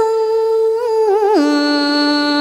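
A woman singing one long drawn-out note in cải lương style, with a brief vibrato. About one and a half seconds in she steps down to a lower held note.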